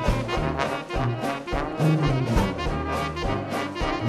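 Traditional New Orleans jazz band playing ensemble: trumpet and trombone lines over a stepping tuba bass, with drums keeping a steady beat.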